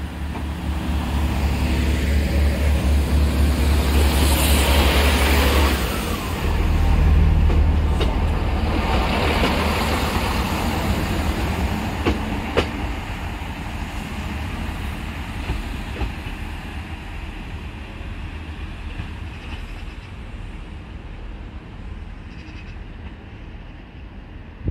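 Great Western Railway Class 165 Turbo diesel multiple unit pulling away from the platform under power: its diesel engines run loud and low, the note dips briefly about six seconds in and then picks up again, with wheel and rail noise as the carriages pass. The sound then fades steadily as the train draws away.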